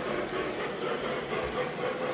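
K-Line O-gauge model passenger cars rolling past on the track, a steady rumble of wheels on rail.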